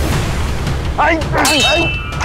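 Sword blades clashing about one and a half seconds in: a single sharp metallic clang that rings on with high tones. Short vocal cries of effort come just before it.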